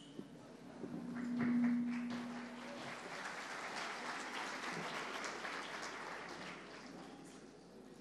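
Audience applauding in a large hall. The clapping swells about a second in, then slowly dies away toward the end, with a short steady hum under it during the first few seconds.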